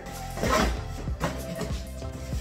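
Background music, over which packing tape on a cardboard box is slit with scissors, a short noisy rasp about half a second in, followed by light rustles and knocks of the cardboard flaps.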